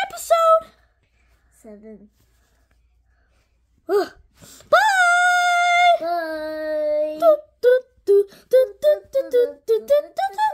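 A high-pitched voice doing a toy character's lines: after a few seconds of near quiet it gives a short "ugh", then a long drawn-out moan or sigh held for about two and a half seconds, then quick choppy vocal noises.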